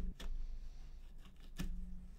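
A knife cutting through a small round aji pepper on a plate: faint clicks and taps of the blade, one at the start and another about one and a half seconds in.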